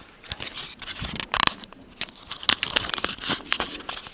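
Clip-on lapel microphone being handled: irregular rustling, scratching and crackling of clothing rubbing against the microphone as it is unclipped and clipped onto another person's top, with several sharp clicks.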